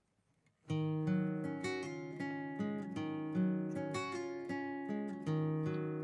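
A recorded nylon-string acoustic guitar part played back, picking out a flowing run of single ringing notes. It starts after a short silence, under a second in.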